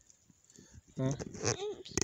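Quiet for about the first second, then a man's voice saying "Huh?" and a toddler's short, higher-pitched vocal sounds near the end.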